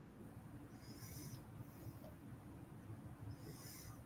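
Very faint pouring of beer from a can into a glass, barely above a low background hiss.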